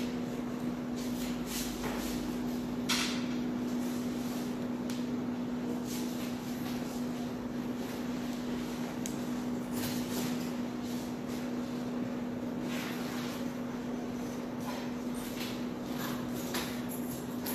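Razor-edge hair scissors slid along wet strands of hair to texturize them, without opening and closing the blades: irregular brief swishing rasps. A steady low hum runs underneath.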